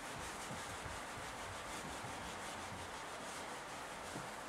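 Felt whiteboard eraser rubbing back and forth across a whiteboard, wiping off marker writing: a faint, steady scrubbing.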